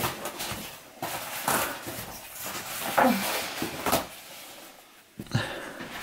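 Interlocking foam floor tiles being handled and pressed together on a wooden floor: irregular scuffs and rubbing in short bursts, with a brief squeak about three seconds in.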